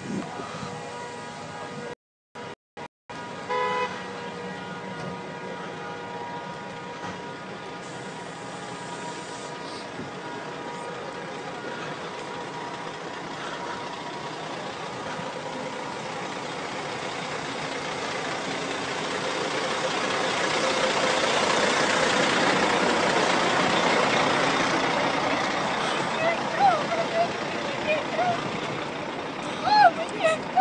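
A vehicle horn sounds one steady held tone that fades over the first dozen seconds and is briefly louder about three and a half seconds in. Behind it runs a steady rush of highway traffic that swells to a peak a little past the middle and then eases off.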